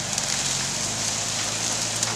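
Steady rustling and crunching of dry grass and dead leaves under the tyres of a chain-towed trailer as it is dragged forward across a field. A low, steady engine hum from the towing SUV runs underneath.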